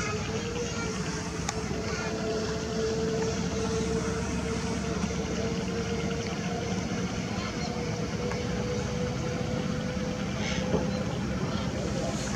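An engine running steadily, a continuous hum holding a nearly even pitch, with a faint click about a second and a half in.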